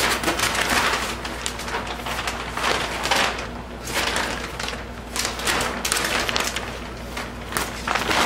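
Thick plastic sheeting crinkling and rustling in irregular bursts as it is folded and tucked around a mattress.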